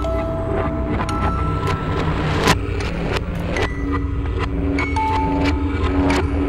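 Horror film score and sound design: a constant low rumbling drone under held eerie notes at several pitches, punctuated by sharp percussive hits, the loudest about two and a half seconds in.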